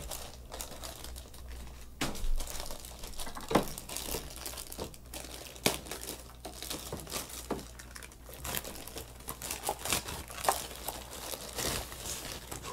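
Plastic wrapping and a plastic bag around a new mini keyboard controller crinkling and rustling as they are handled. The crackles come irregularly, with a few sharper clicks among them.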